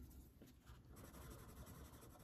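Faint scratching of a coloured pencil shading small flower shapes on a paper card.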